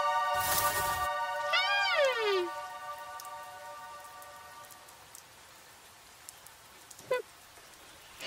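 A held musical chord fading out, with a brief hiss about half a second in. About a second and a half in comes an animal-like cartoon cry that rises and then slides down, and a short cry sounds again near the end.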